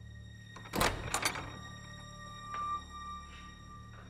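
A door thuds open about a second in, with a couple of lighter knocks right after, over quiet, steady background music.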